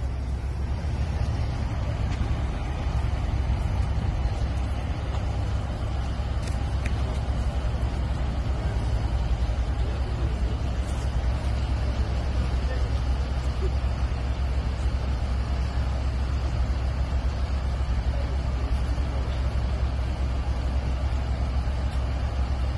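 Parked fire engine running its engine, a steady low rumble that does not change.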